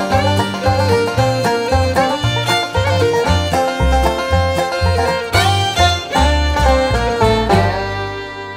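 Bluegrass band playing an instrumental closing passage, with banjo, fiddle and guitar over a steady pulse of bass notes. Near the end it lands on a final chord that starts to ring out.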